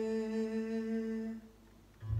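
A man humming one long, steady held note that stops about 1.4 seconds in, followed by a brief hush.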